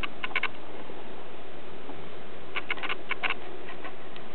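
Steady background hiss with a few faint short ticks, a couple about a quarter second in and a small cluster about two and a half to three and a quarter seconds in.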